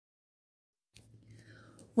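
Near silence: about a second of dead silence, then faint room tone with a low steady hum.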